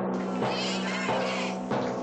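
Horror film trailer score: a low steady drone with high, wavering shrieking tones entering at the start, and a few drum strikes.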